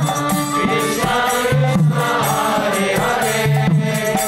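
A congregation chanting a devotional mantra together, many voices in unison, with steady rhythmic percussion.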